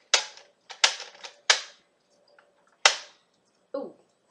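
A series of about five sharp plastic clacks, unevenly spaced, from a Nerf Stockade foam-dart blaster being handled and swung about.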